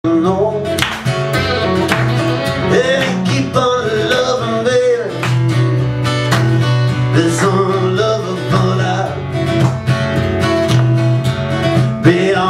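Live band music: an electric guitar and a strummed acoustic guitar playing together, with a melody line that bends up and down in pitch over steady low notes.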